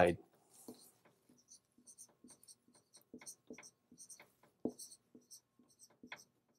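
Dry-erase marker writing on a whiteboard: a faint string of short strokes and squeaks as letters are drawn.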